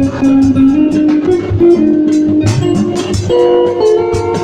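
Instrumental introduction to a choir's Christmas song: a guitar-led melody over a bass line and a steady drum beat.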